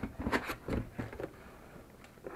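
Cardboard shipping box being opened by hand: its flaps scrape and rustle in several short bursts during the first second or so, then the handling quietens.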